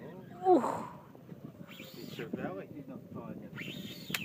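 Mostly voices: a loud exclamation of "ooh" about half a second in, then fainter talk over a low, steady background noise.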